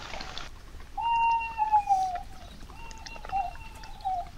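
Owl hooting: one long, slightly falling hoot about a second in, then a shorter, wavering hoot near the end.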